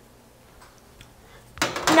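Metal baking sheet sliding onto a wire oven rack: a few faint clicks, then a short, loud scrape near the end.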